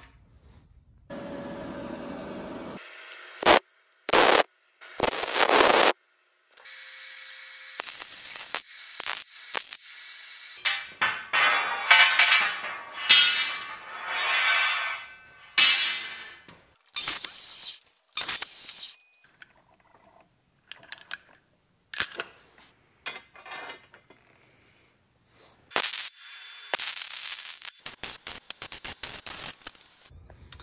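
A string of short shop sounds cut one after another: bursts of MIG welding crackle on steel conduit, with metal pieces knocking and clinking in between.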